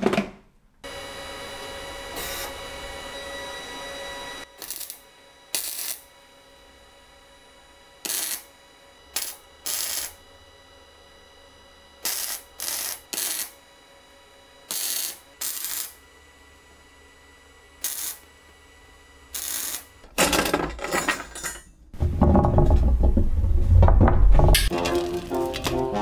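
Electric arc welding on a steel pipe in short bursts: about a dozen welds of under half a second each, one every second or two. Before them comes a steady pitched hum lasting a few seconds, and a loud sound with heavy bass takes over near the end.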